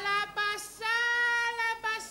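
A high voice singing alone: a few short notes, then one long held note about a second in.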